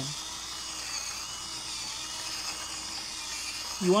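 Electric hand drill running steadily, its bit boring out and smoothing a hole through the plastic shell of a toy blaster, with a faint high whine.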